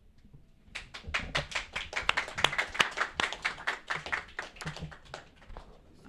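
Small audience applauding: a scattering of hand claps that starts about a second in and tapers off near the end.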